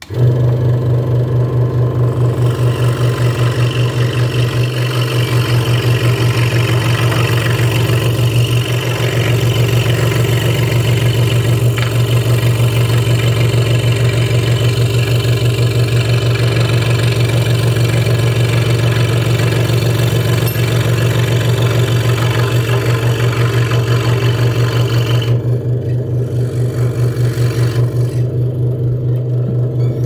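Hegner Multicut 2S scroll saw starting up and running with a steady low hum and a fast, even chatter from the blade stroke. Its blade is trimming the inside edge of a round opening in a wooden box piece, which adds a rasping cutting noise. The cutting noise stops a few seconds before the end, the saw runs free briefly, then the motor winds down.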